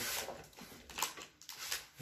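Light handling sounds of hands working at a bicycle's handlebar stem: a short rustle at the start, then a small sharp click about a second in and a couple of fainter ticks.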